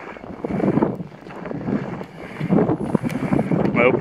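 Wind buffeting the microphone in uneven gusts. A man's voice starts just before the end.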